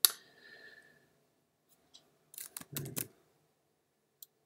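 A sharp click with a brief ringing tone, then a quick cluster of several clicks and knocks about two and a half seconds in.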